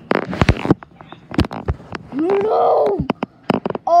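A child's voice making a short wordless vocal sound that rises and then falls in pitch, about halfway through, among rustles and clicks of the camera and plush toys being handled.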